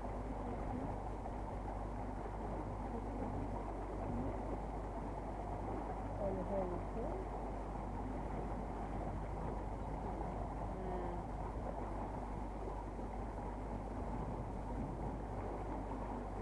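Small boat's motor running steadily underway, a constant low drone mixed with water rushing along the hull.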